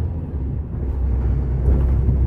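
Truck's diesel engine running in a low, steady rumble, heard from inside the cab as the truck rolls slowly forward.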